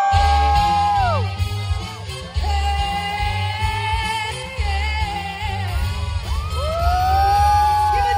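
Live pop music through a large concert sound system starts abruptly, with a heavy pulsing bass. Over it come long held high notes that swoop up, hold and fall away, about three times.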